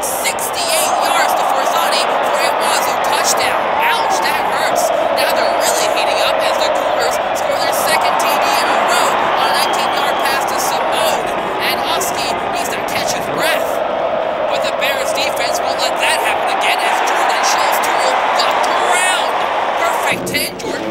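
Large stadium crowd cheering steadily, with scattered claps through it.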